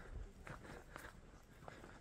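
Faint footsteps of a person walking on a paved path, a soft step about every half second.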